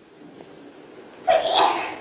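A single sudden, short burst of breath from a person, of the cough or sneeze kind, a little over a second in.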